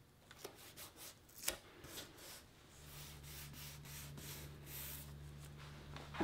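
Faint handling sounds of masking tape being pressed and rubbed down along the edge of a pane of picture glass: a few light clicks and rubs, the sharpest about a second and a half in. A low steady hum comes in about three seconds in.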